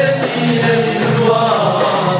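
A traditional folk troupe's male chorus singing together over a steady rhythmic accompaniment.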